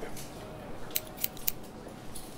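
Scissors cutting hair, three quick sharp snips about a second in.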